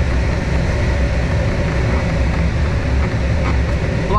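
Steady rushing airflow and low rumble inside a glider cockpit during the landing approach, with a faint steady tone running under it.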